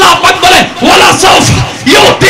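A man's loud, impassioned voice preaching or chanting in Bengali through a public-address microphone.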